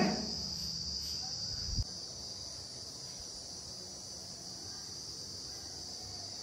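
Steady high-pitched chorus of insects, with a single dull low bump a little under two seconds in.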